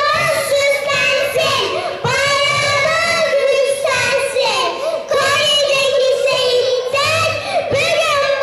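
Children's voices singing a song, in held, pitched notes broken into phrases.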